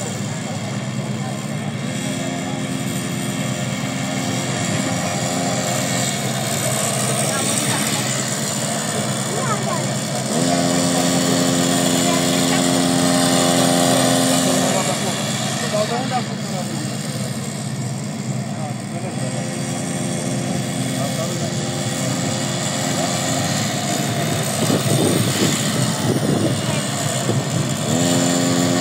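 Small gasoline engine of a motorised drift trike running at steady speeds. Its pitch steps up a couple of seconds in, higher again about ten seconds in, and drops back a few seconds later as the throttle is opened and eased.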